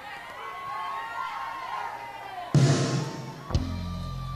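Live soul band starting a slow ballad: a crowd calling out over a soft backing at first, then a full band chord with a cymbal crash about two and a half seconds in, and a drum hit about a second later with a sustained bass note.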